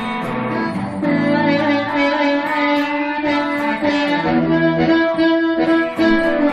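Amplified blues harmonica played cupped against a handheld microphone, holding long wailing notes in an instrumental break of a blues song.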